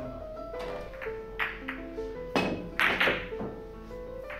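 Background music with a plucked melody, over which heavy Russian billiard balls clack as a shot is played: a lighter click about a second and a half in, then louder ball-on-ball and cushion knocks around two and a half and three seconds in.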